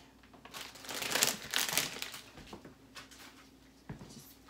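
Plastic bag of frozen mixed vegetables crinkling as it is handled and emptied, loudest in the first two seconds, with a short knock near the end.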